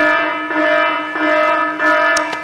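Background music: a bell-like chiming figure of held tones that pulses about every half second, with no speech over it.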